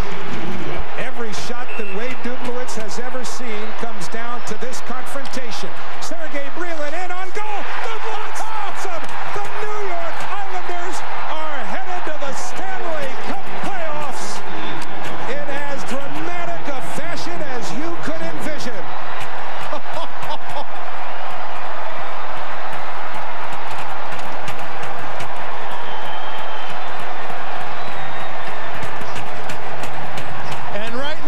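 Hockey arena crowd cheering and yelling after a shootout goal, with many overlapping shouting voices and repeated sharp knocks and bangs, most of them in the first half. The noise settles into a steadier roar in the second half.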